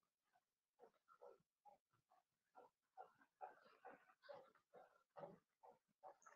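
Near silence, with a faint, indistinct voice from about a second in.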